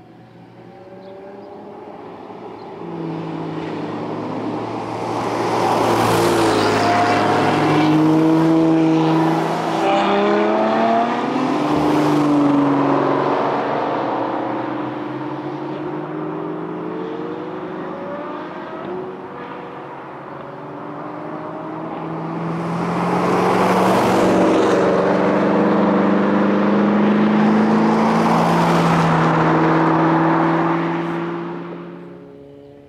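Car engines accelerating and passing, their notes rising and falling in pitch, in two waves: the first builds from a few seconds in and peaks for several seconds, the second swells from a little past the middle and is still loud at the end.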